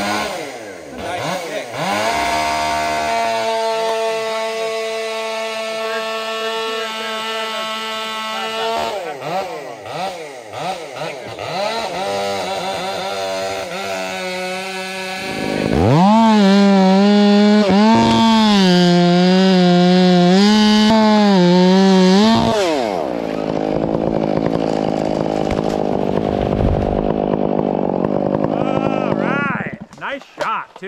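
Two-stroke chainsaw at full throttle, boring into and cutting through a large redwood trunk during felling. The engine's pitch wavers as it works in the cut, loudest in the middle. A heavy noisy rush with a low thud follows as the felled tree comes down.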